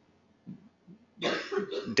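A short near-silent pause with two faint small noises, then a man coughs about a second in, running straight into speech.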